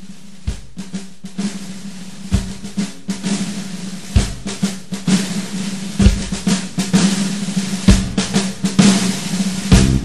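Intro of a country-rock song: a snare drum roll, military-style, growing louder, with a bass drum hit about every two seconds. The full band comes in at the very end.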